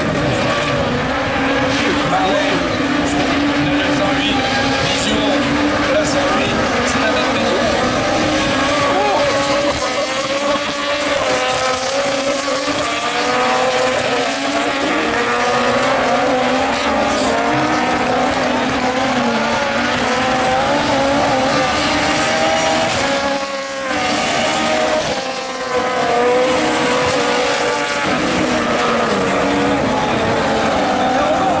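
Several Super 1600 rallycross cars racing, their small naturally aspirated 1.6-litre four-cylinder engines revving hard and rising and falling in pitch through gear changes and corners.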